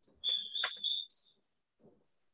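A high-pitched electronic tone lasting about a second, with a click partway through, stepping up in pitch just before it stops.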